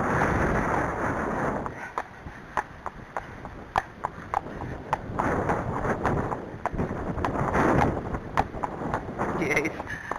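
A horse's hoofbeats on a hard farm track, sharp clicks roughly every half second, under swells of wind rumble on the head-camera microphone.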